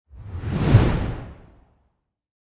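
A single whoosh sound effect for a logo animation, heaviest in the deep low end. It swells to a peak just under a second in and fades away by about a second and a half.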